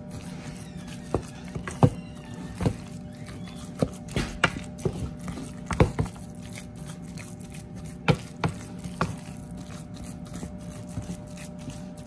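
A utensil clicking and knocking against a mixing bowl at irregular moments as the thick salmon patty mixture is stirred together. A steady low hum runs underneath.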